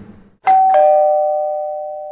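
Two-note ding-dong chime, a higher note about half a second in, then a lower one a moment later, both ringing on and slowly fading.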